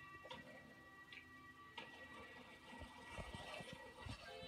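Faint television sound: a steady high tone with a few soft clicks and some low knocks about three seconds in.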